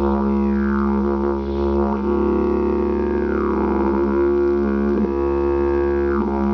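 A 122 cm didgeridoo in the key of D# playing an unbroken low drone, the player's mouth and voice shaping its overtones into sweeps that glide up and down. One long slow downward sweep falls through the middle.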